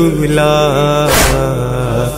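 Male voice singing a noha, an Urdu mourning lament, holding a long drawn-out note that wavers in pitch. A short hissing beat lands about a second in, one of a beat that repeats every second and a half or so.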